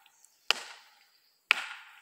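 Polypropylene Cold Steel Walkabout walking stick knocking against a tree trunk twice, about a second apart. Each knock is sharp and dies away quickly.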